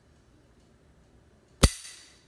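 Beretta 92 pistol dry-fired on an empty chamber: a single sharp metallic click of the hammer falling, near the end, with a brief ring after it.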